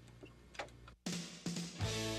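Faint room sound with a couple of light clicks, then about a second in a rock band starts playing suddenly: guitar chords over bass and drums.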